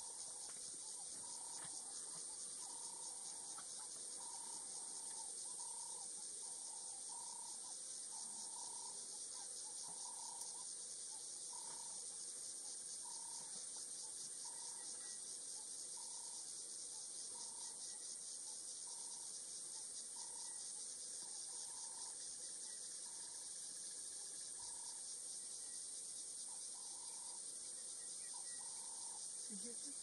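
Steady, high-pitched chorus of insects trilling in dry grass, faintly pulsing, with a short lower call repeating about once a second behind it.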